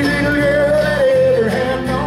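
Live bluegrass band playing: fiddle, mandolin, acoustic guitar, electric bass and banjo, with a long held melody note over a steady bass line.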